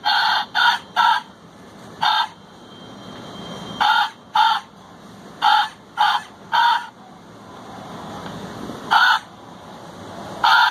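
LED skeleton vulture Halloween prop playing recorded bird caws: about eleven short harsh calls in clusters of two and three, with gaps of a second or more between clusters.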